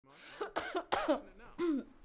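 A woman coughing several times in short bursts, the coughing of someone who is sick.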